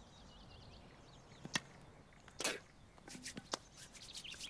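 Quiet outdoor ambience with small birds chirping in the first half second. A sharp tap comes about one and a half seconds in, a short scuffing rustle about two and a half seconds in, and a few lighter clicks after three seconds, as a boy handles a baseball bat and ball.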